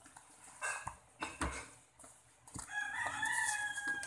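A rooster crowing: one long, held call in the second half, the loudest sound. Earlier there are the rustles and knocks of a cardboard box and packaging being handled.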